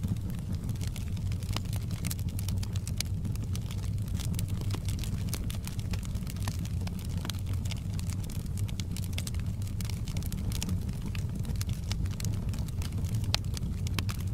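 Wood fire burning in a fireplace: frequent irregular sharp crackles and pops from the logs over a steady low rumble of flame.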